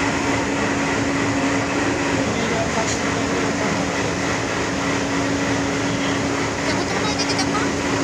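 A loud, steady mechanical hum: one constant low tone over an even rush of noise, with indistinct voices mixed in.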